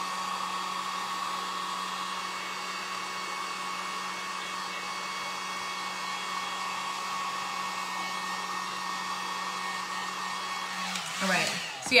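Handheld electric heat gun running steadily, blowing hot air over fresh paint to dry it, with a steady low hum under the rushing air. It switches off about a second before the end.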